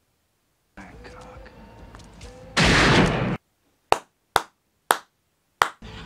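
A single loud gunshot from a film soundtrack, a burst with a short noisy tail, followed by four short sharp clicks about half a second apart.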